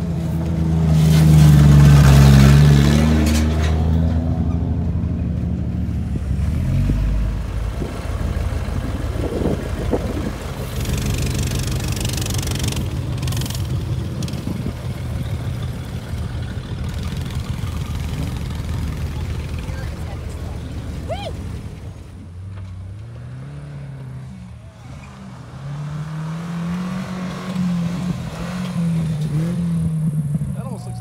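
Car engines running throughout: one revs loudly in the first few seconds, then a steady engine rumble continues. In the last several seconds a Subaru wagon's engine revs up and down repeatedly as it is raced on a dirt course.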